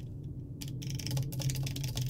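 Typing on a computer keyboard: a quick run of keystrokes starting about half a second in, over a low steady hum.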